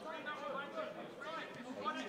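Faint voices talking in the background.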